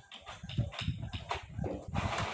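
Epson L120 inkjet printer printing: an uneven, rhythmic low clatter of the print-head carriage and paper feed as a printed page advances out of the front slot.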